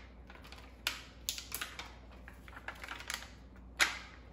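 Metal tweezers picking through a small clear plastic container of rhinestones: a run of light, irregular clicks and rattles, with the loudest click near the end.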